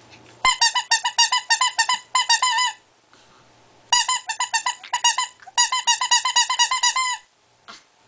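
Squeaky toy squeezed rapidly: three runs of quick, same-pitched squeaks, about six or seven a second, with short pauses between the runs.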